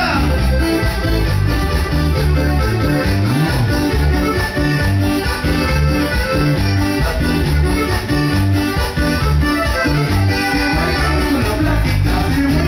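Norteño band playing an instrumental cumbia passage: accordion melody over a steady bass line and rhythm.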